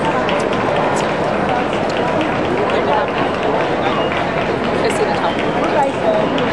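Steady babble of many indistinct voices talking at once in a large, echoing hall.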